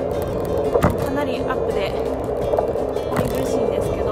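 Riding noise from a mini velo bicycle: small wheels rolling over city pavement with wind on the microphone, steady throughout, with two sharp knocks from bumps, about a second in and near the end. Background music plays underneath.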